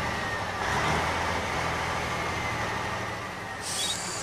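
Engine sound of a cartoon mobile crane truck driving along: a steady low engine hum with a hiss over it.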